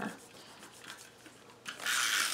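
A tape runner drawn along the edge of a paper card, laying down adhesive: a short, loud rasp starting near the end, after quiet paper handling.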